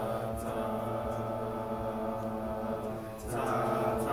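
A class of students singing sustained notes together in several parts, the sound swelling louder a little over three seconds in.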